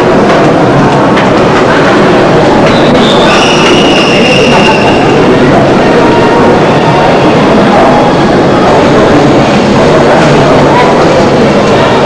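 Sentosa monorail train at the station platform, a loud steady running noise with a brief high-pitched whine about three seconds in.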